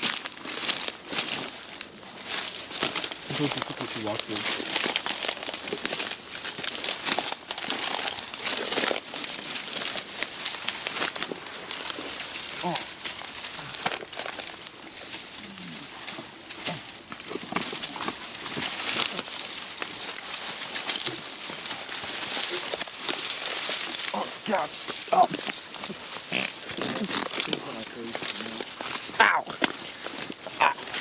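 Dry winter brush and twigs rustling and crackling as people push through on foot: a continuous run of crunches and small snaps.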